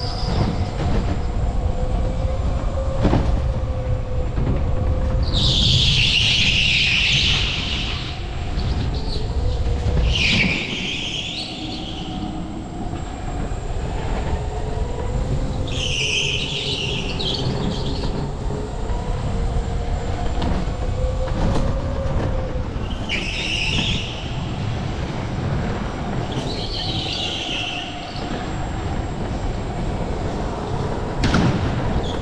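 Electric go-kart driven hard: the motor's whine rises and falls with speed over a low rumble of chassis and tyres. The tyres squeal five times through the corners, the first and longest about five seconds in.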